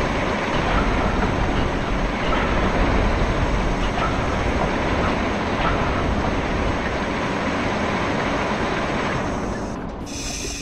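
Steady mechanical rumble and clatter of machinery, with a few faint clicks along the way, changing suddenly just before the end.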